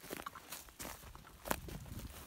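Faint footsteps and light handling noise: a few soft, scattered knocks.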